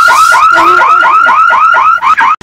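Car alarm sounding its rapid repeating chirp, a loud run of short falling 'whoop' notes about four a second that stops abruptly at the end.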